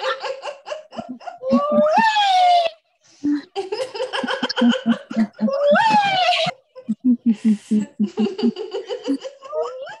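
People laughing hard in quick ha-ha bursts, with two long rising whoops about two and six seconds in. It is deliberate laughter-yoga laughter.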